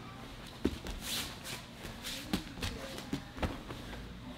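Two people grappling on foam mats: heavy cotton jiu-jitsu gi fabric rustling and scuffing, with several dull thumps of hands, feet and knees landing on the mat as a guard pass is drilled.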